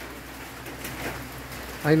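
Steady rain falling, with a faint bird call partway through.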